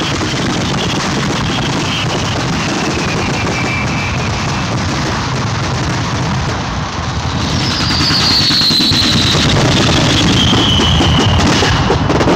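Fireworks display heard close up: a dense, continuous crackle and rumble of bursting shells, with high whistles gliding down in pitch, one near the start and a longer one from about seven and a half seconds in. It gets a little louder after about eight seconds.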